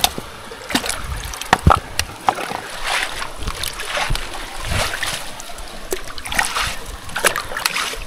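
Stream water splashing and running over a perforated micro hydro intake pipe. Irregular splashes come through as leaves are cleared off it by hand.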